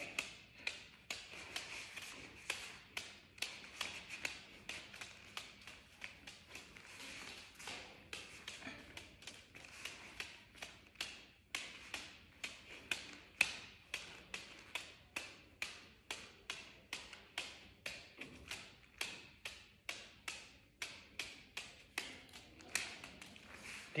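Open palm patting a scrunched-up paper ball up into the air again and again: faint, light taps at about two a second, the steady rhythm of a keep-up drill.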